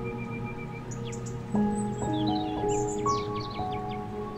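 Calm ambient background music of long held notes that shift every second or so, with birds chirping over it in the middle and later part.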